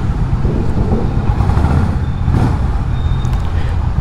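Honda H'ness CB350's air-cooled single-cylinder engine running steadily as the motorcycle rolls slowly through a covered concrete parking garage.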